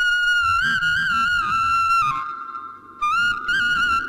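Background music: a flute playing a high, ornamented melody that breaks off about two seconds in and picks up again about a second later.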